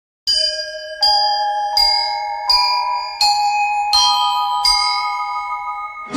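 Instrumental opening of a devotional song, played on bell-like tones. Seven struck notes come about one every three-quarters of a second, each ringing on under the next, in a slow, mostly rising phrase that begins a moment after silence.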